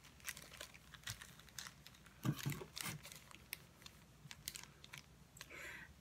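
Faint crinkling and rustling of a plastic zip-top bag and a paper sheet being handled, in scattered soft clicks with a couple of brief duller knocks about two and a half seconds in.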